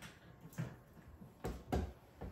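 Three faint clicks and light knocks from a hand working at the back of a small plastic network storage box, plugging in or seating its cable. The last two, near the end, are the loudest.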